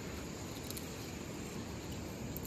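Crickets trilling steadily, over close, irregular rustling and crunching as goats chew grass stalks held up to them.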